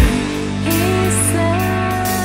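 Rock song from a studio recording: bass and guitars under a voice singing long held notes, with a heavy drum hit right at the start.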